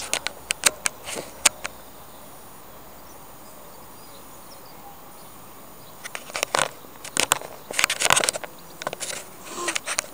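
Camera handling noise from a handheld camera being turned: a few sharp clicks at first, then steady faint hiss, then a run of clicks and rustling knocks in the second half as the camera moves.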